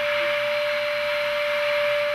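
Handheld vacuum cleaner's 600 W AC motor running steadily, a constant whine with an airy hiss above it, its nozzle sealed by a plastic water jug held on by suction.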